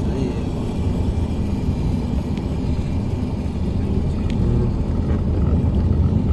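Steady low road and engine rumble heard from inside a vehicle's cabin as it drives along a city street.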